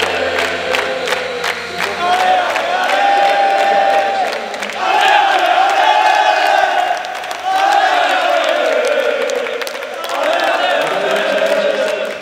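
A group of men chanting in unison in long, held phrases, with rhythmic hand-clapping in the first couple of seconds.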